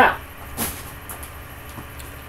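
A brief rustle as a boxed action figure is picked up and handled, about half a second in, over a steady low hum.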